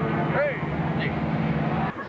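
Bus engine running steadily with a low hum, with a short rising-and-falling voice call about half a second in; the hum cuts off abruptly just before the end.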